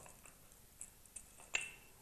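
Wooden rolling pin rolling pastry dough out on a marble table: a few faint, sharp clicks and light knocks, the loudest about three quarters of the way through.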